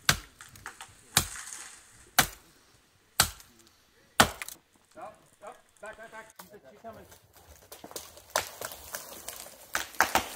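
Axe chopping into a dead tree trunk: five sharp strikes about a second apart, then two more knocks near the end.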